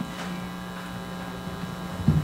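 Steady low electrical hum with a faint buzz from the microphone and sound system.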